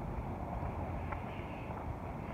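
Steady outdoor street background noise, an even low rumble of the kind made by distant traffic and air moving over a phone microphone, with a faint click about a second in.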